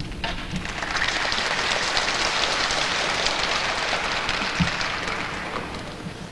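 Audience applauding, many hands clapping at once: it swells in over the first second, holds steady, and dies away near the end.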